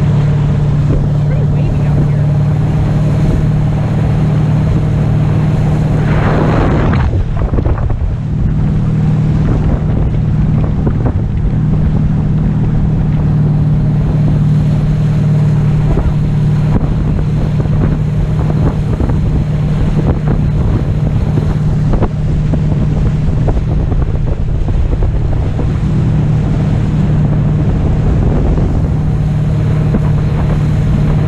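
Towing speedboat's engine running with a steady drone, under heavy wind buffeting on the microphone and rushing water from the wake. A brief louder rush of noise comes about six seconds in.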